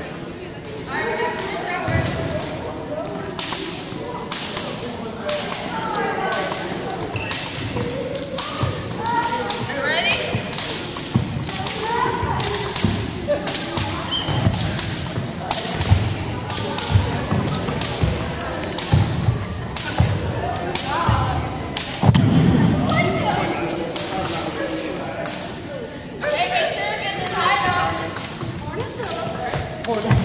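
Long jump rope turned by two turners, slapping the wooden gym floor in a steady run of sharp slaps.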